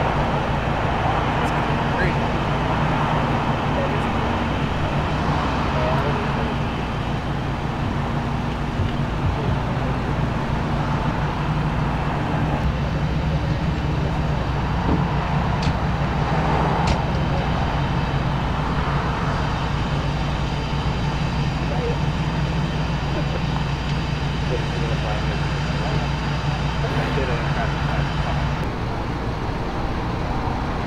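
Steady low hum of an idling vehicle engine over road traffic noise, with indistinct voices in the background.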